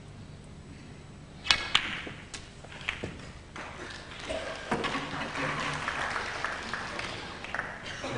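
A snooker shot: the cue tip clicks against the cue ball and the cue ball knocks the pink about a second and a half in, followed by a few lighter ball clicks as the pink drops and balls settle. After that comes a few seconds of general noise from the arena.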